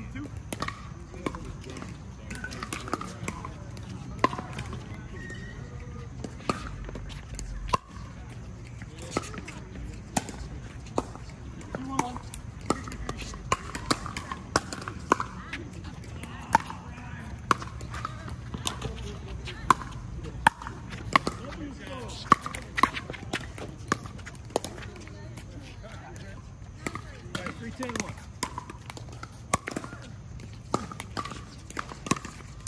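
Pickleball paddles striking a plastic ball, a string of sharp pops coming in quick runs of rally hits, with people talking in the background.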